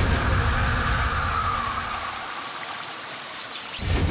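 Rushing, hissing sound effect for a magical fire blast, fading away over the first three seconds before a sudden swell just before the end.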